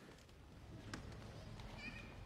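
Quiet theatre room tone during a stage blackout: a low steady hum, with a faint click about a second in and a brief faint high squeak near the end.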